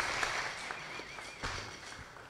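Congregation applauding, fading away over the second half.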